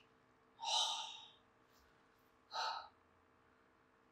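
A man's breathing out heavily, twice: a longer breathy exhale about half a second in, then a shorter one near three seconds.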